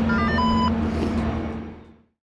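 A quick run of electronic beeps at several different pitches, ending in a short held tone, from a ski-lift ticket gate. Under it is the steady low hum and rumble of the chairlift's machinery, and the sound fades out near the end.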